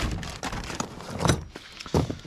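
Gear being rummaged in a metal truck-bed toolbox: items shifting and clattering, with a few sharp knocks, the loudest near the end.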